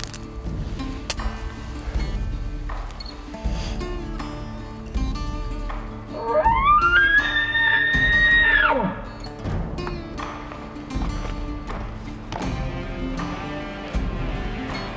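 Background music, with a hunter's elk bugle call blown through a bugle tube about six seconds in. The call climbs in steps to a high whistle, holds it for about two seconds, then drops away sharply.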